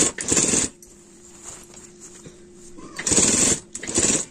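Domestic sewing machine stitching fabric in short runs: one run ends within the first second, and after a lull with a faint steady tone it starts again about three seconds in, stopping and restarting briefly near the end.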